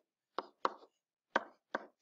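Four short, sharp taps of a pen or stylus on a writing surface, in two quick pairs, as strokes are drawn on the screen.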